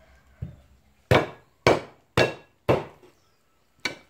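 Large kitchen knife chopping eel on a round wooden chopping block: a light tap, then four sharp chops about half a second apart and a fifth near the end.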